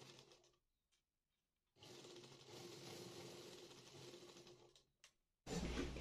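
Faint motor-driven sewing machine running in two short stretches, stitching fabric: a steady hum with a light rattle, the second stretch about two and a half seconds long. A louder sound starts near the end.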